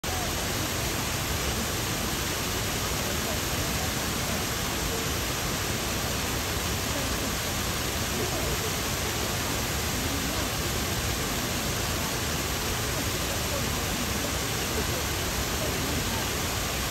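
Garden waterfall: a wide curtain of water falling over a rock ledge into a pond, a steady, even rush of water with no change throughout.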